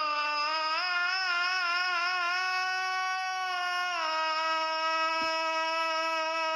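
A solo male voice singing a selawat through a microphone, one long melismatic held line with wavering ornaments. About four seconds in it steps down to a slightly lower note and holds it.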